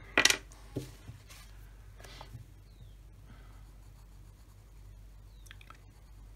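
A brief sharp noise just after the start, then faint, light scratching of a colored pencil on paper.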